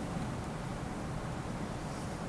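Steady room tone in a meeting room: an even low rumble with a faint hiss and no distinct events.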